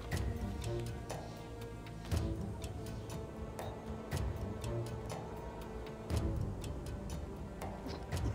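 Dramatic background score: sustained tones with a low drum hit about every two seconds and quick ticking clicks throughout.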